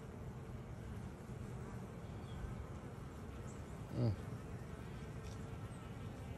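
Honeybees buzzing steadily at a hive entrance, a faint continuous hum of many bees on the landing board.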